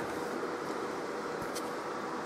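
Steady background noise, an even hiss with a faint steady tone under it.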